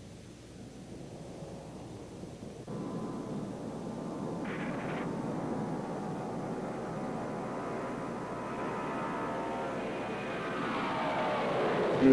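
Jet noise of a Lockheed L-1011 TriStar's Rolls-Royce RB211 turbofans as the airliner moves along the runway. The noise comes in suddenly about two and a half seconds in: a steady rush with a whine on top, growing slowly louder through to the end.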